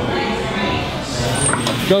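A Prowler push sled loaded with about ten weight plates being shoved slowly across gym turf: a steady scraping of its skids over the turf as it is forced into motion under the heavy load.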